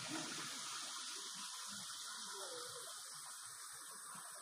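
Shallow mountain stream running over rocks: a steady rush of water.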